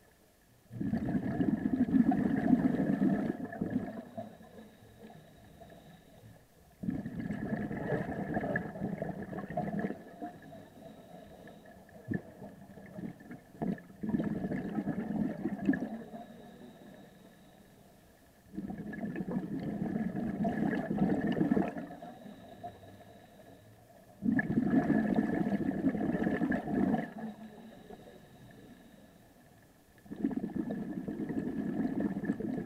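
Scuba diver breathing through a regulator underwater: five bursts of exhaled bubbles gurgling out, each lasting about three seconds and coming every five to six seconds, with quieter gaps between them while the diver inhales.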